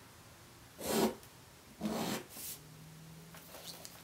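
Pencil drawing a straight line on paper along a ruler: two short strokes about one and two seconds in, then fainter rubbing of the ruler and hand on the paper near the end.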